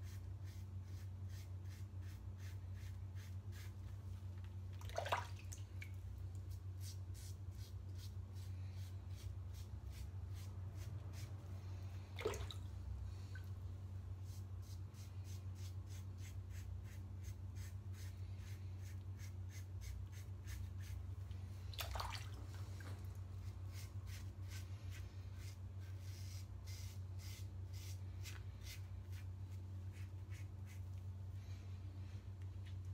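Double-edge safety razor scraping in short, quick strokes over a lathered, already-shaved scalp on a touch-up pass, with a steady low hum underneath. Three short, louder sounds come at about five, twelve and twenty-two seconds in.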